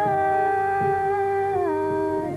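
Marathi natyasangeet (Hindustani classical) vocal music: a long held sung note over organ and tanpura accompaniment, stepping down to a lower note about one and a half seconds in.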